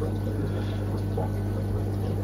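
Fish-room background: a steady low hum from running aquarium equipment, with a soft trickle of water from the tanks' filters.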